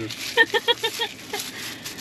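A person laughing in a quick run of about five short, even 'ha' pulses, about half a second in.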